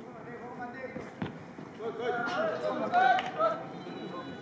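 Shouting voices of players and onlookers around a football pitch, loudest in the second half, with a single sharp kick of the ball about a second in.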